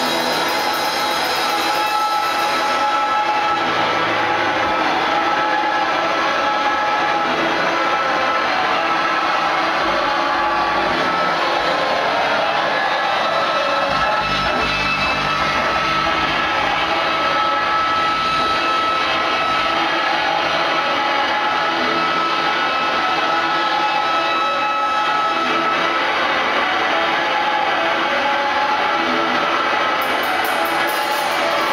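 A live noise-rock band playing a dense, steady wall of distorted guitar noise with long held tones, without a clear beat; the low end swells in the middle.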